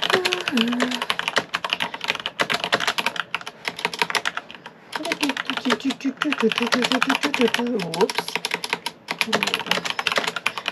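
Fast, continuous typing on a computer keyboard, many keystrokes a second with short pauses.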